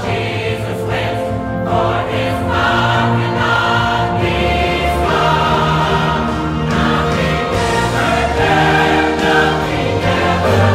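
Mixed choir of men and women singing a worship song in long held chords, with instrumental accompaniment and a steady bass beneath.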